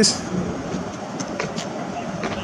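Steady rushing outdoor background noise with no clear tone or rhythm, of the kind that traffic or wind on the microphone makes, with a few faint ticks.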